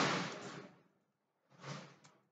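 Adhesive tape being peeled off a laptop's power-button ribbon cable and plastic palmrest: a rasp that fades out within the first second, then a shorter one near the end.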